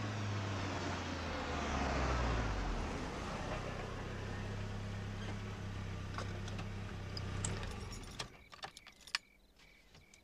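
Car engine and road noise as a car drives at night, with a falling pitch in the first few seconds as it goes by. The sound stops abruptly about eight seconds in, leaving a few faint clicks.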